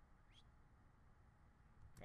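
Near silence: room tone with a faint low hum, and a faint click near the end.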